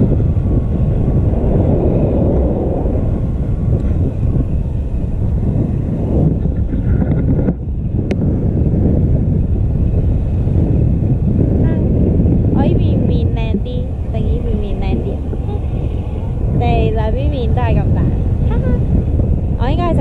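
Wind rushing over a camera microphone in flight under a tandem paraglider: a steady, loud, low rumbling rush, briefly cut off about seven and a half seconds in.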